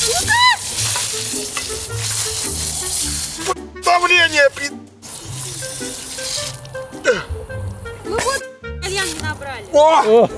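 Water spraying hard out of a garden hose whose fitting has been torn off, a loud hiss in two spells, the first about three and a half seconds long and the second shorter. Short shouts and background music run underneath.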